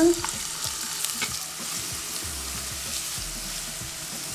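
Chopped onion and sliced garlic sizzling in hot olive oil in a pan, with a spoon stirring and scraping through them against the pan.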